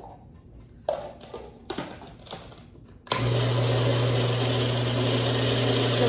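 Two light knocks as the feed-tube pusher goes into a small food processor, then about three seconds in the processor's motor switches on suddenly and runs steadily with a low hum, pureeing a thick avocado-and-herb dressing.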